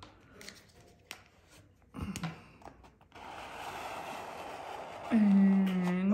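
A plastic card scraped over glued tissue paper for about two seconds, a steady scraping hiss starting about three seconds in. Near the end a person gives a long, low hummed 'mmm', the loudest sound.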